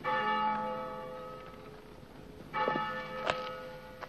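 A large bell tolling twice, about two and a half seconds apart, each stroke ringing and slowly fading. A sharp click comes during the second stroke.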